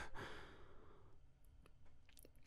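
The tail of a man's breathy exhale fading out within the first half second, then near silence.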